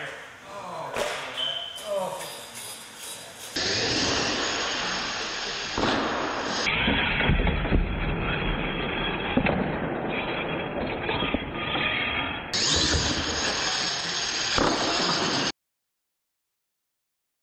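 Voices for the first few seconds, then the noisy din of an indoor RC monster truck run with scattered knocks and a heavy thump about halfway through as a truck flips off a ramp and lands. The sound is broken by abrupt edits and cuts off suddenly to silence near the end.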